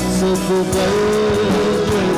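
Live worship band playing an Urdu worship song: bass guitar and guitars under a held melodic line that bends up and down in pitch.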